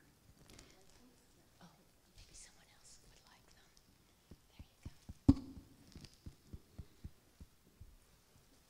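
Soft whispering and murmured voices with shuffling movement and scattered low knocks, and one loud thump a little after five seconds in.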